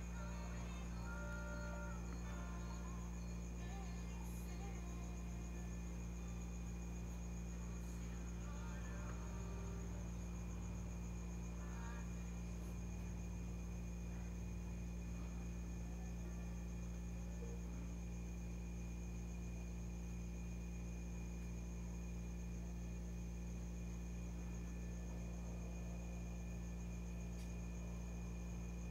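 Steady low electrical hum with a faint high-pitched whine underneath: room tone, with no clear sound from the brushwork.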